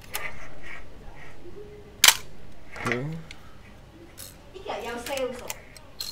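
Yashica TL-Electro 35 mm SLR's shutter firing once about two seconds in, a single sharp mechanical snap of mirror and focal-plane shutter, released at 1/500 s during a shutter-speed test.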